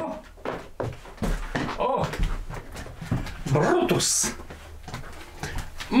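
A dog whimpering in short bursts, with indistinct voices and a few sharp knocks in a small room.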